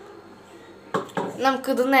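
A stainless-steel mixer-grinder jar is set down on a kitchen counter, giving a short metallic clatter about a second in. A voice starts speaking right after.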